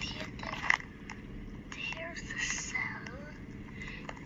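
A person speaking softly, too faintly to make out words, over a steady low hum, with a brief click just under a second in.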